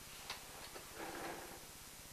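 Faint handling noises as a person shifts in a chair and moves a sheet of paper: a light click, a couple of small ticks, then a soft rustle about a second in.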